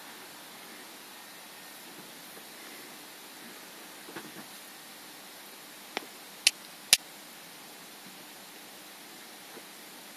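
Steady faint hiss of room tone, broken by three sharp clicks close together about six to seven seconds in, the last two the loudest.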